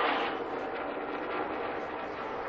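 NASCAR Cup race car's V8 engine running at speed around the track, a steady drone picked up by trackside broadcast microphones.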